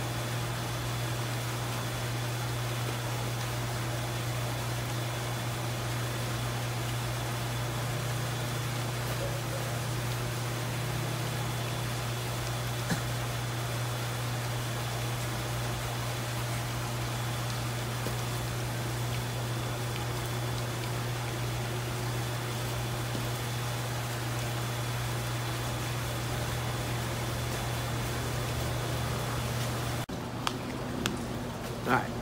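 Steady low electric-motor hum under an even rushing hiss, the greenhouse's machinery running without change, with a faint high-pitched whine through much of it.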